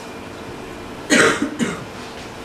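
A person coughing twice, about a second in: a loud first cough and a shorter second one.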